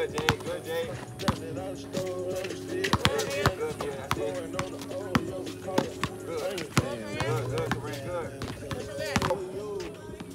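Background music playing throughout, with basketballs bouncing repeatedly on a hard outdoor court as players dribble.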